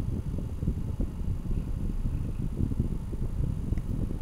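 Uneven, gusty low rumble of wind buffeting the microphone.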